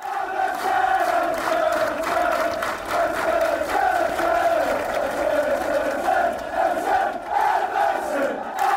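A large crowd singing a chant together in unison, long wavering notes held throughout, starting suddenly as the end screen begins.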